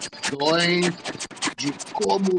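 A voice holding one drawn-out vowel, rising in pitch then held, over dense, irregular crackling and clicking like glitchy scratch noise.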